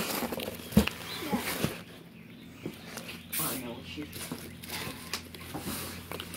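Hands rummaging through a box of foam packing peanuts and plastic-wrapped bath bombs: rustling and light knocks, the sharpest about a second in.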